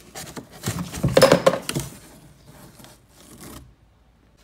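Rustling and scraping of a furry plush toy being handled by hand close to the microphone, loudest about one to two seconds in and then fading to softer scuffs.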